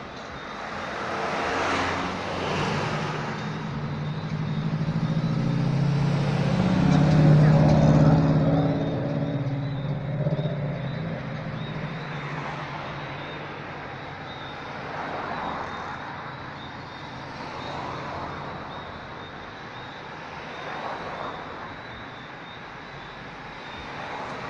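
Road traffic: vehicles passing close by one after another, each swelling and fading. The loudest pass, about seven seconds in, carries a low engine drone. Smaller cars follow every few seconds.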